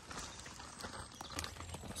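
Quiet footsteps crunching on a gravel track while walking, a run of small clicks and scrapes.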